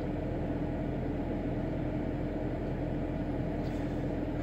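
Steady in-cabin hum of a car sitting with its engine idling and the ventilation fan blowing: an even hiss with one low, steady tone and a deeper hum beneath it.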